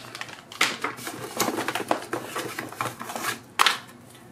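Plastic packaging crinkling and rustling as cables are handled and pulled out of a cardboard box, in irregular crackles with a louder crinkle about three and a half seconds in.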